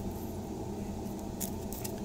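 A couple of faint clicks from plastic card holders being handled and set down, over a steady low background hum.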